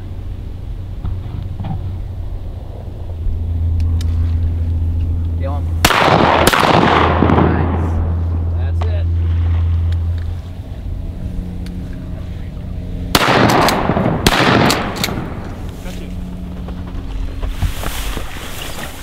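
Shotgun shots: two close together about six seconds in, then a quicker group of three or four about thirteen to fifteen seconds in, each with a short echoing tail. A low steady drone with shifting held tones runs underneath.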